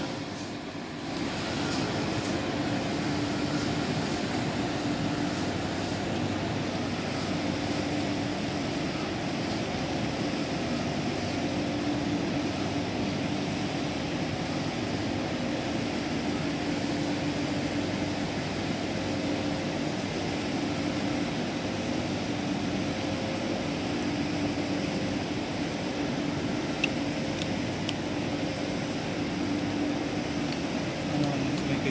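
Steady mechanical hum over a rushing noise, with a low drone that swells and fades every few seconds.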